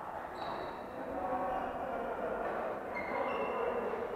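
Echoing badminton-hall ambience with several games in play: distant voices and a few short high squeaks of court shoes on the floor, one about half a second in and more near the end.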